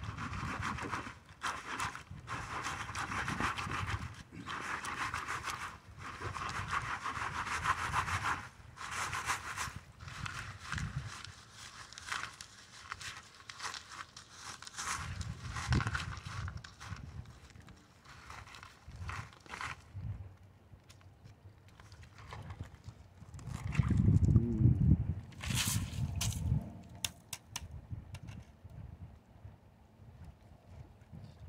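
Plastic gold pan being shaken under water with a load of river gravel and sand: repeated swishing and gritty rattling of gravel sloshing in the pan, in busy bursts for the first several seconds and sparser after. About three-quarters of the way through comes a louder, brief low rumble.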